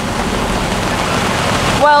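Steady rain falling on a sailing yacht and its canvas cockpit cover, an even hiss without pause.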